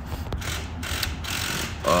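Faint clicks and soft rustling from a phone being handled while someone types on its touchscreen keyboard, over a steady low hum.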